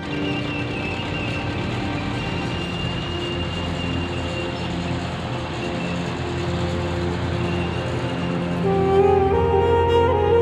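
Dramatic soundtrack music over the steady engine and track noise of a tracked armoured vehicle driving across rough ground; the music swells louder near the end.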